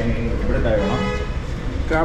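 Indistinct voices of people talking over a steady low rumble of background noise in a busy eatery.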